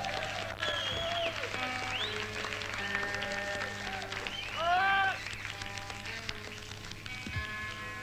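Live rock gig between songs on an old cassette recording: scattered crowd shouts and whistles, with one louder shout about five seconds in. Under them run a steady amplifier hum and held guitar notes.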